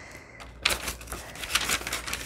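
Paper pages of a handmade journal being turned over by hand, rustling and flapping in a quick, uneven run that starts about half a second in.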